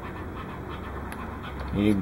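Steady background hiss with a low hum, with no distinct event standing out. A man's voice starts near the end.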